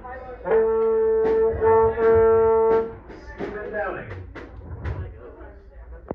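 A brass instrument holds one steady note for about two and a half seconds, with two short breaks. Then come scattered sharp knocks and broken, wavering tones.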